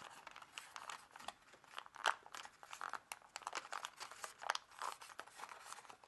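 Sheet of kami origami paper crinkling in many short, irregular crackles as one hand presses and shapes its folded pleats.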